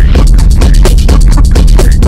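Loud electronic dance music played on the Drum Pads 24 pad app: a heavy, steady bass under a fast, dense beat.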